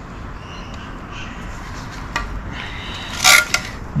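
Handling noise from a carbon-fibre hydrofoil wing being moved by hand: a faint click about two seconds in, then a short scraping rustle a little after three seconds, over low room noise.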